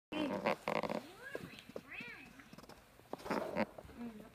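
Short, high-pitched vocal sounds in three bursts. The middle burst has a pitch that rises and falls in arcs.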